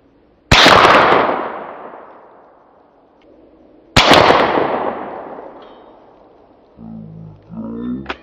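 Two shots from a Daisy Legacy 2201 single-shot .22 Long Rifle, about three and a half seconds apart, each followed by a long echoing decay.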